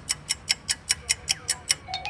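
Clock-ticking sound effect: rapid, even ticks, about five a second. Near the end a run of pitched ticks begins, climbing steadily in pitch.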